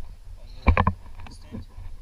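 Wind rumbling on the microphone of a handheld camera, with a brief cluster of loud knocks and rustles about three-quarters of a second in.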